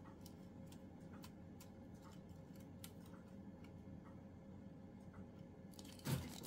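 Near silence: room tone with faint, irregular small ticks and clicks.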